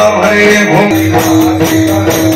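Warkari devotional group chanting: voices sing a bhajan in unison over brass hand cymbals (taal) struck in a steady beat of about four strokes a second, with a pakhawaj drum.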